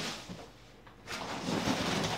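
Crumpled kraft-paper packing rustling and crackling as it is handled and pulled out of a cardboard box, with a brief lull before the rustling picks up again about a second in.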